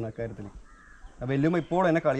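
A man's voice: a short word at the start, a brief pause, then loud, drawn-out speech from a little over a second in.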